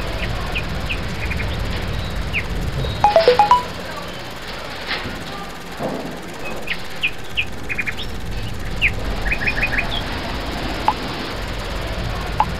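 Outdoor field ambience: birds giving short, high chirps on and off over a steady low rumble, with a brief run of louder pitched notes about three seconds in.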